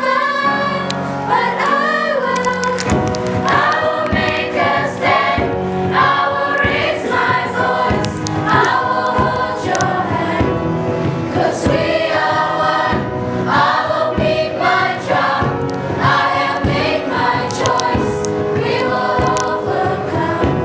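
A children's school choir of mixed voices singing together, with piano accompaniment.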